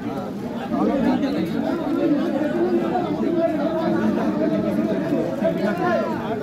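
Several people talking at once in steady overlapping chatter, with no single voice standing out.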